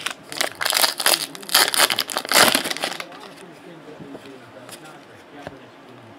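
Crinkling of a foil trading-card pack wrapper and rustling of cards being handled. It is loudest over the first three seconds, then drops to faint handling noise.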